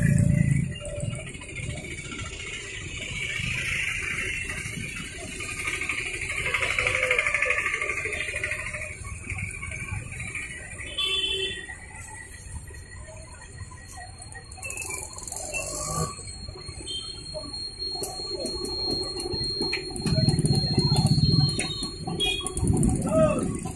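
Busy street traffic, with auto-rickshaw and motorbike engines running in slow traffic. A thin, high steady tone sounds for several seconds in the second half.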